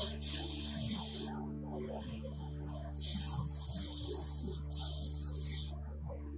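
Garden hose spray nozzle spraying water onto plants in two bursts: the first for about a second and a half, the second from about three seconds in for about two and a half seconds.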